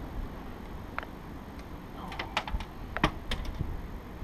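A few sharp clicks and light knocks while a small blue catfish is handled and unhooked in a boat: one click about a second in, then a cluster of them near the end, over a steady low rumble.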